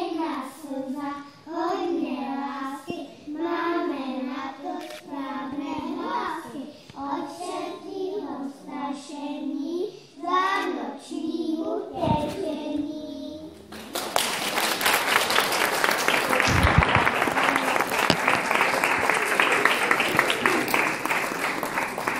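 A group of young children sings together, their voices stopping about twelve seconds in. About two seconds later an audience starts applauding and keeps clapping.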